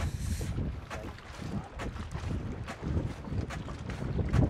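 Wind buffeting an outdoor microphone: an uneven low rumble that rises and falls.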